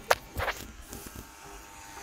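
Handling noise from a phone being picked up and moved: a sharp knock just after the start, then a brief rub and a few faint ticks.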